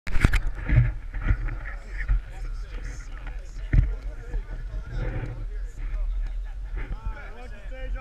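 A group of people talking over one another close to the microphone, with several sharp knocks from the camera being handled and a steady low rumble. Near the end, rising and falling calls from the group grow clearer.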